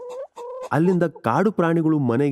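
Chickens clucking in a run of short calls.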